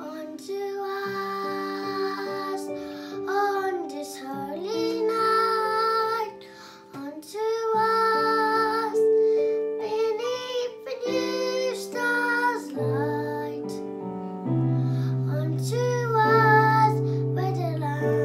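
Three young boys singing a sacred song together with piano accompaniment; their voices come in about a second in, over piano notes.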